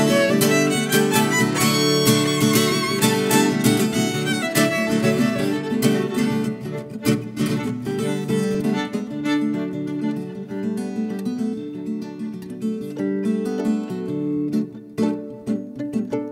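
Viola caipira (ten-string Brazilian folk guitar) and violin playing an instrumental duet. In the first part the violin's bowed line with vibrato rides over the picked viola. From about midway the viola's plucked notes carry the music more on their own and a little softer.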